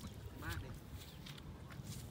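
A duck quacks once, briefly, about half a second in, over a faint low rustle.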